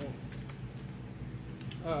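Faint clicks and light rattling of tarot cards being handled as one card is put down and another drawn, over a low steady background hum.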